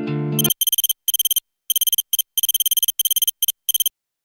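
Guitar music cuts off about half a second in, followed by high-pitched electronic alarm beeping in rapid pulses, in short irregular runs separated by brief gaps, which stops just before the end.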